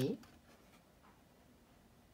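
A spoken word trails off just after the start, followed by faint rustling of cardstock oracle cards being slid and lifted by hand.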